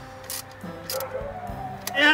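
Background music with steady held notes, over a few sharp, spaced ticks from a socket ratchet being worked on the supercharger's mounting bolts.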